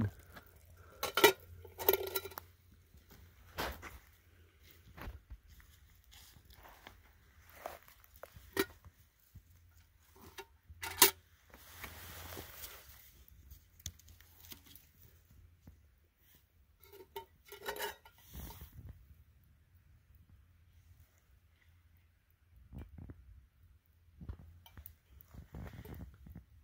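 Scattered clinks and clanks of a metal camp cooking pot, its lid and a spoon being handled, with a soft scraping stretch about halfway and quiet gaps between.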